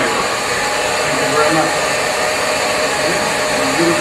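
Hair dryer running steadily, a loud even rushing noise.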